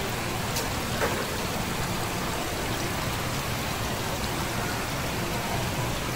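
Water falling in thin streams from a row of holes in a white plastic pipe into live shellfish tanks: a steady, unbroken splashing.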